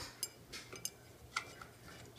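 A few faint, scattered clicks and clinks as an LED bulb is screwed into a light fixture's socket.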